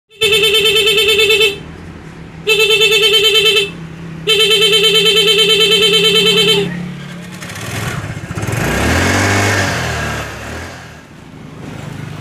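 Motorcycle disc horn sounding through a horn interrupter ('putus-putus') module, which chops each blast into a rapid stutter: three presses, the last one the longest. After them comes a rushing noise that swells and fades.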